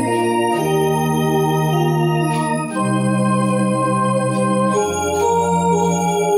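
Rohnes Onix Plus electronic organ being played: sustained chords over held bass notes, with the harmony changing about every two seconds.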